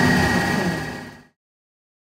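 Steady machine hum with a thin high whine, fading out a little after a second in and cutting to silence.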